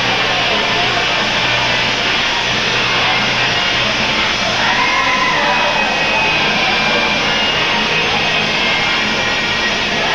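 Music playing over steady crowd noise in a large hall, with one drawn-out call rising and falling about halfway through.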